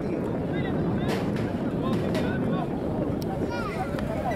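Outdoor ambience at a rugby ground: indistinct voices of players and spectators, with a steady rumble of wind on the microphone.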